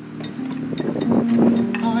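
A woman singing a slow R&B song over a backing track, going into a held "oh" near the end.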